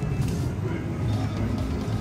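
Pickup truck engine running steadily as the truck crawls past towing a parade float trailer, a low, even engine sound.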